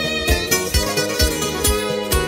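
Instrumental break of a 1980s Greek popular song: plucked string instruments playing the melody over a steady drum-and-bass beat, with no singing.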